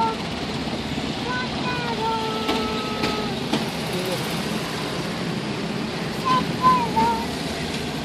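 Steady engine and road noise from a vehicle moving through city traffic, with faint voices at times.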